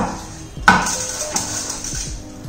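Background music, with two sharp knocks, one right at the start and one under a second in, as a spatula pushes sticky granola mixture out of a steel mixing bowl into a foil-lined metal baking tin.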